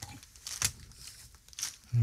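Faint rustling and a few short, soft knocks of handling: a plastic cup being handled and set down.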